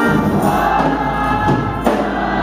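Large church choir singing a gospel song with instrumental accompaniment, a deep bass line coming in at the start. A single sharp hit sounds near the end.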